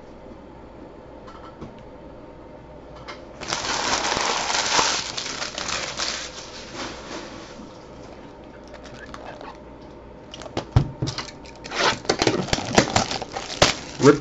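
Crinkling and rustling of packaging for a few seconds, then a run of clicks and scrapes as a cardboard trading-card hobby box is handled and opened.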